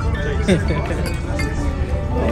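A glass carafe clinks once against a tall drinking glass about half a second in as water is poured into it, over background music and voices.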